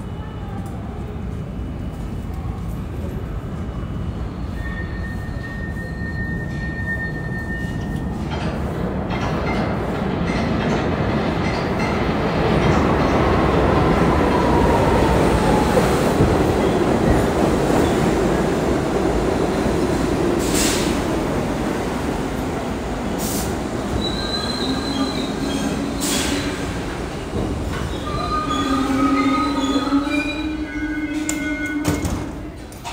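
New York City subway trains running through the station: a rumble builds and peaks in the middle, with a falling squeal in it. Near the end a 1 train pulls into the platform with wheel squeal, a steady motor whine and a few sharp clacks from the rails.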